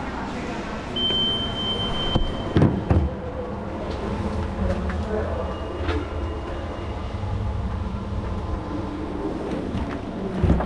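Metro station security checkpoint: a steady high electronic beep lasting over a second about a second in, a couple of knocks just before three seconds, and a shorter beep near six seconds, over a low machine hum and muffled voices.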